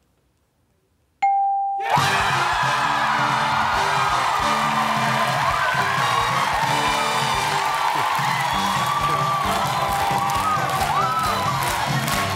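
A pause of about a second, then the game-show answer board's single electronic ding, revealing an answer that scores. Loud celebratory win music follows, with a studio audience cheering and whooping over it: the sign that the contestant has won the jackpot.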